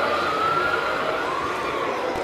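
Hooben 1/16 RC Abrams M1A2 SEP tank's digital sound unit playing a gas-turbine whine that rises and dips slightly in pitch, over the running noise of the moving tank's tracks and drive.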